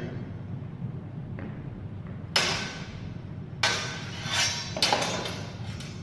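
Steel training longswords clashing in sparring: a ringing blade-on-blade strike about two and a half seconds in, then three or four more in quick succession over the next two and a half seconds.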